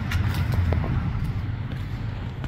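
Low rumble of a road vehicle going by, swelling over the first second and a half and then easing off, with a few light footsteps on paving.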